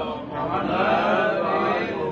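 Male chanting of an Arabic invocation, drawn out and melodic, with a short break just after the start.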